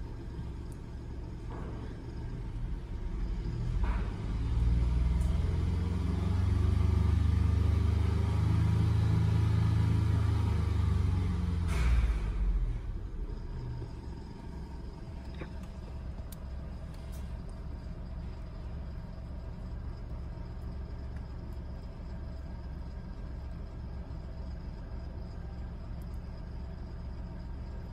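Car engine idling, revved up about four seconds in and held high for several seconds, then dropping back to a steady idle about halfway through.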